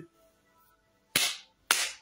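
Two sharp hand claps, about half a second apart.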